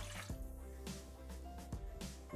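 Quiet background music, with a short trickle of water poured from a glass into the steel bowl of a Thermomix (Bimby) near the start.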